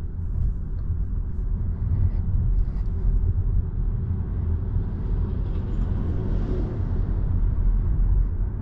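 Low, steady rumble of tyre and road noise inside the cabin of a Volvo EX30 Twin electric car, growing slightly louder as the car speeds up from about 25 to 42 km/h.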